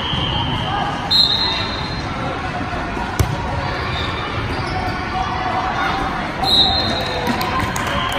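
Volleyball rally in a large gym: one sharp ball contact about three seconds in, and two high sneaker squeaks on the sport-court floor, about a second in and again near the end, over voices and the echo of the hall.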